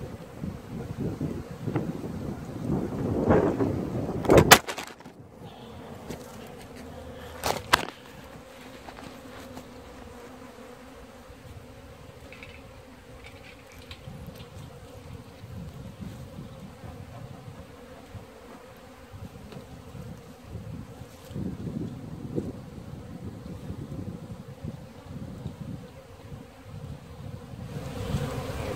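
Honeybees buzzing around an opened hive, a steady faint hum. Wind gusts on the microphone in the first few seconds, and two sharp knocks about four and a half and seven and a half seconds in.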